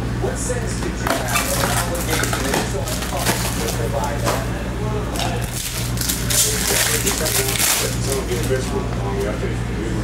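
Plastic wrapping and a foil card pack crinkling and tearing in the hands as a trading-card hobby box is opened, in irregular crackly bursts over a steady low hum.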